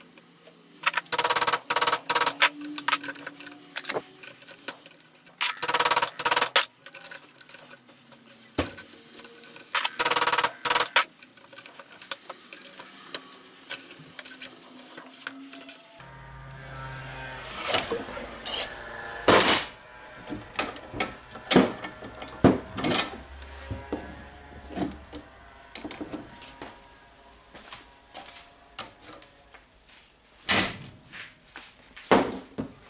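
Metal hand tools knocking and clinking against a steel bench vise and drill chuck, in irregular sharp knocks, some of them ringing briefly.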